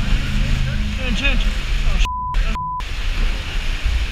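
Rough sea water churning and surging around kayaks inside a sea cave, a heavy low rumble on the camera's microphone, with shouting voices. About two seconds in, two short censor bleeps half a second apart blank out everything else.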